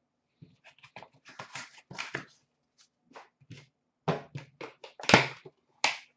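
Light handling noises of trading cards: a scattered series of soft taps and clicks as a card is handled and set down on a glass display counter, with one sharper knock about five seconds in.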